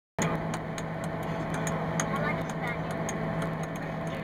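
Rally of mini table tennis: a plastic ball clicking off small paddles and a miniature table, about four clicks a second, over the steady hum of a coach bus on the move.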